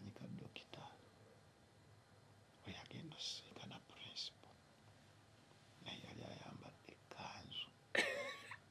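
Quiet, whispered speech: a few short murmured phrases separated by pauses.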